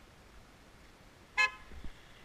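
Car horn giving one short toot about a second and a half in, followed by a few faint low thumps.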